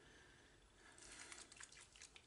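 Near silence, with a few faint light clicks in the second half.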